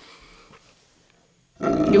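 A large mastiff-type dog growling and grumbling, loud from about a second and a half in: a reluctant dog being ordered off the bed.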